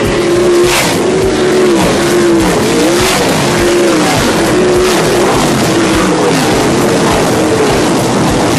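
A pack of 360 sprint cars racing past in the turn on a dirt oval. Their V8 engines rise and fall in pitch again and again as one car after another goes by.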